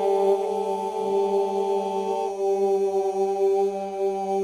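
Unaccompanied male folk group singing Albanian iso-polyphony: a steady group drone under long held notes from the upper voices, one of which drops a step about two seconds in.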